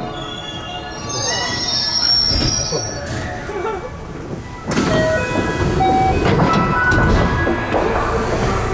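207 series electric train braking to a stop, with steady whining tones from the traction motors and high-pitched squealing from wheels and brakes. About five seconds in, a sudden, louder rush of noise starts and continues.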